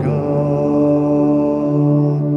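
A hymn in a reverberant church: a sustained organ chord with a held sung note, the voice dropping out briefly in the middle before the next sung phrase.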